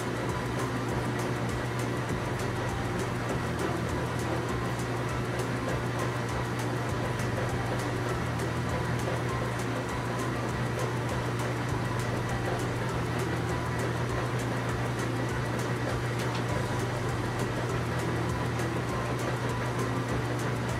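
A steady, unchanging low machine drone with a strong hum, like a heavy vehicle's engine running, laid over the animated crane at work.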